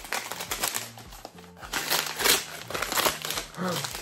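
Gift wrapping paper crinkling and rustling in irregular bursts as a present is torn open by hand, over soft background music.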